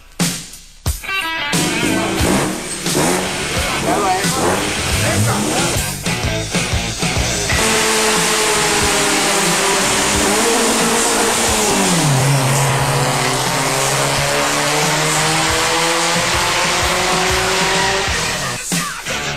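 Two cars, one a Hyundai Elantra, accelerating hard side by side down a drag strip: engines revving with tyre noise. About seven seconds in, the sound becomes a loud, steady rush, and one engine note drops in pitch partway through.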